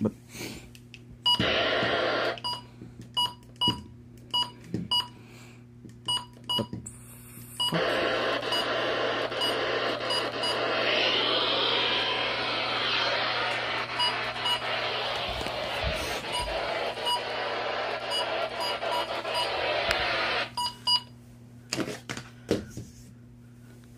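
Handheld weather radio giving short electronic key beeps as its buttons are pressed to step through channels. These alternate with stretches of receiver static hiss, the longest lasting about twelve seconds, where no clear station comes in.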